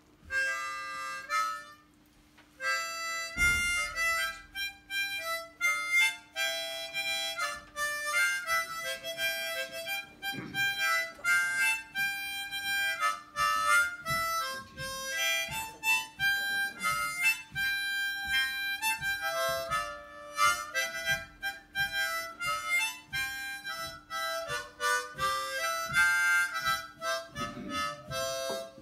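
Harmonica playing the instrumental introduction to a folk song, with melody and chords. There is a short break about two seconds in, then continuous playing.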